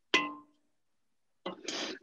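A single metallic clang with a short ringing tail as cookie dough is scraped off a stand mixer's metal beater and bowl with a spatula. A brief rasping noise follows near the end.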